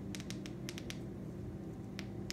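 A quick run of small, sharp clicks, about seven in the first second, from the buttons on a ring light's control being pressed to step through its brightness and colour settings, over a faint low hum.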